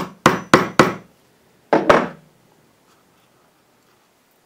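A small hammer tapping the handle of an awl to punch a starter hole for a screw into a canvas's wooden stretcher bar: four quick sharp taps in the first second, then one more about a second later.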